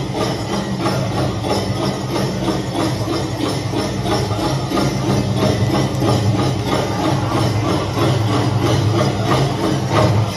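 Powwow drum group's song played loud through a loudspeaker, with a steady drumbeat and the massed shaking jingles of the dancers' regalia.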